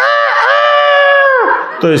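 A man imitating a rooster's crow into a microphone: one loud cock-a-doodle-doo with a short rising start and a long held high note that drops away about a second and a half in.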